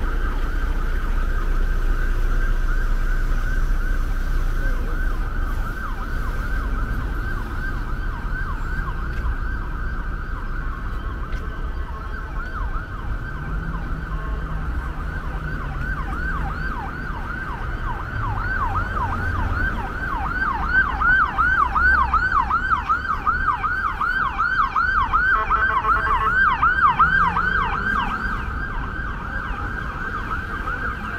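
An emergency vehicle's siren sounding a fast, repeating up-and-down yelp. It grows louder past the halfway point and fades near the end, over the low rumble of street traffic.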